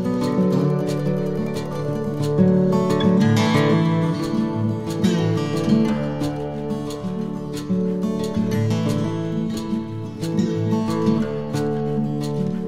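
Instrumental background music led by a plucked acoustic guitar, running steadily.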